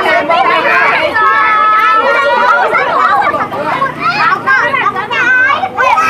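A crowd of children shouting and chattering all at once, many high voices overlapping.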